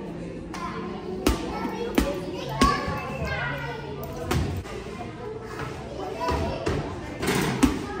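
A small basketball bouncing and striking the hoop and floor, about six sharp thuds at uneven intervals, with children's voices underneath.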